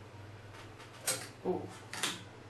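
Laminator running with a low steady hum, and two short sharp noises, one about a second in and one near the end, as the hot copper board with its toner-transfer paper is taken from the laminator and set down on the desk.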